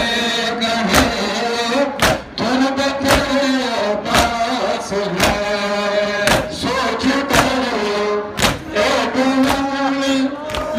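A group of men chanting a noha together, with a hand slap on bare chests about once a second keeping the beat (matam).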